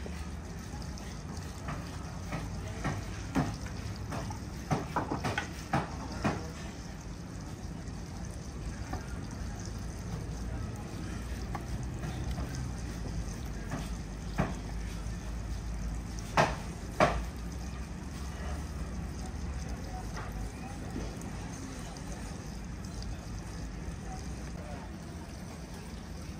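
Scattered sharp knocks and clicks of wooden sticks being laid into a large metal cauldron of marinated meat, over a steady low background hum. The knocks come as a cluster a few seconds in, then a few more past the middle, two of them close together.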